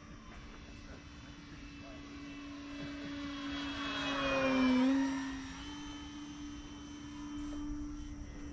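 E-flite Pitts S-1S electric RC biplane's motor and propeller humming as it flies past. The sound grows louder to a peak about halfway through, the pitch drops as the plane passes, and then it fades.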